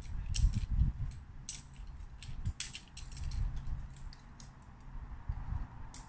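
Irregular sharp clicks and clinks of climbing hardware, carabiners and quickdraws, as a lead climber clips the rope into a bolt. Some clicks come singly and some in quick clusters, over a low rumble.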